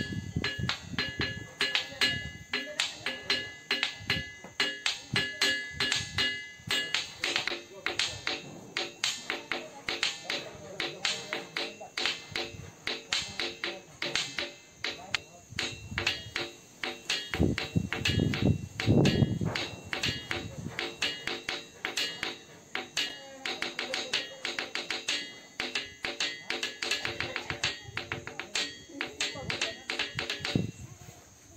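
Ringing rock (sonorous rock) struck rapidly and repeatedly with a hard object, each strike giving a bell-like ring. The tap rhythm runs throughout; in the first seven seconds or so several clear ringing tones hang on between strikes.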